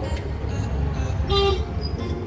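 Steady low rumble of road traffic with one short vehicle horn toot about a second and a half in.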